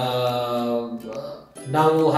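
A man's voice speaking, holding a long, steady vowel for about a second, then pausing briefly before speaking again.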